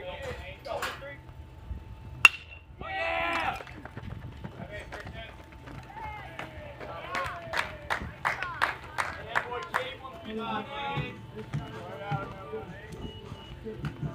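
A metal baseball bat striking a pitched ball, one sharp crack with a short ring about two seconds in and the loudest sound here. Spectators yell and cheer right after the hit and again a few seconds later.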